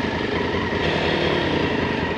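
Motorcycle engine idling steadily with an even low pulse.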